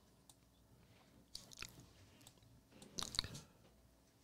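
Mostly quiet room with two small clusters of faint clicks, about one and a half and three seconds in: a computer mouse being clicked.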